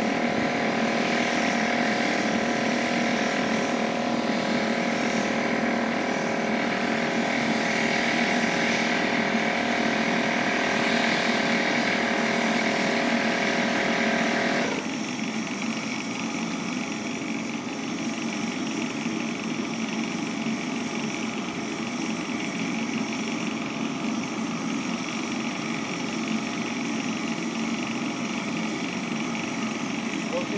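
A metal-casting furnace with its burner and blower running steadily. A steady whine over the roar cuts off abruptly about halfway through, and the roar carries on a little quieter.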